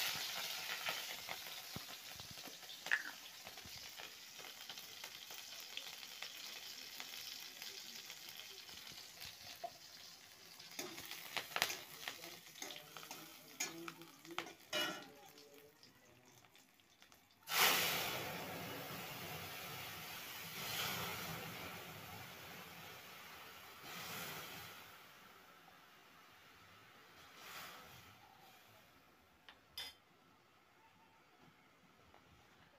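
Hot oil sizzling in a kadai as food goes in, with the clicks and scrapes of a metal spatula stirring. A second loud sizzle starts suddenly about 17 seconds in, then slowly dies down.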